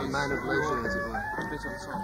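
Live band music with a held, wavering vocal line going on throughout.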